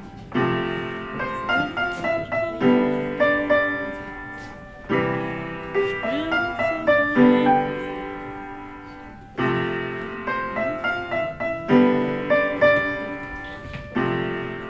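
Upright piano played solo: full chords struck every couple of seconds and left to ring and fade, with quicker melody notes between them.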